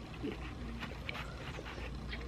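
Close-miked chewing with small wet mouth clicks, and a brief squeaky whine that falls in pitch about a quarter second in.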